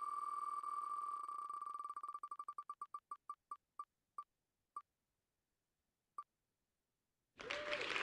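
Wheel of Names spinner's ticking sound effect: clicks of one high pitch, so fast at first that they blur into a tone, slowing to single ticks as the wheel coasts to a stop about six seconds in. Near the end a burst of applause sound effect starts as the winner is announced.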